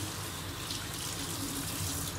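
Kitchen tap running steadily, the water splashing over a plastic colander being rinsed and into a stainless steel sink.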